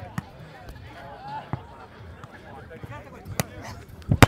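A few sharp slaps of hands striking a volleyball, the loudest about three and a half seconds in, over faint chatter of players on the grass courts.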